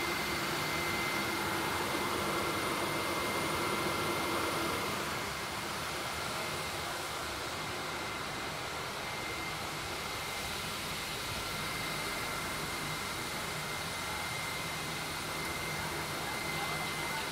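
Electric regional trains in an underground station: a steady rushing hum with a thin high whine, which eases a little about five seconds in.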